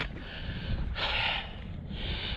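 A man breathing hard after a short uphill walk, with a long breath out about a second in. Under it is a low rumble of wind on the microphone.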